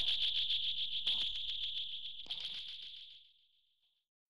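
The tail of an opening theme song: a high ringing tone with a fast, even rattling pulse, fading away to silence about three seconds in.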